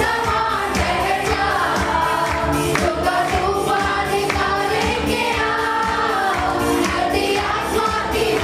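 Christian worship song: women lead the singing into microphones, a group of voices sings along, and an arranger keyboard accompanies with a steady beat.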